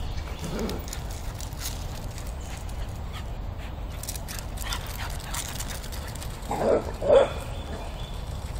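Dog barking while playing: two short, loud barks about half a second apart near the end, after a fainter single bark or yip about half a second in.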